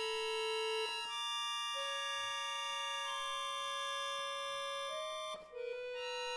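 Piano accordion playing long held chords of several sustained notes, moving to new pitches every second or so, with a short break in the sound about five and a half seconds in before the chord resumes.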